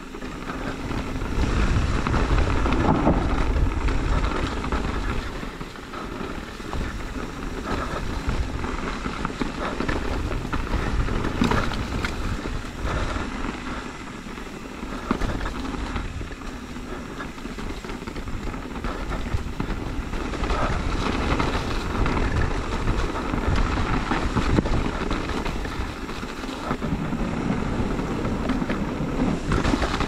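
Mountain bike rolling down a dirt trail: wind noise on the camera microphone over tyre and trail noise, swelling and easing with speed.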